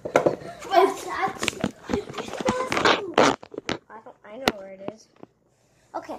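Children's voices with a few sharp knocks about halfway through, then the sound cuts out to dead silence for most of the last second.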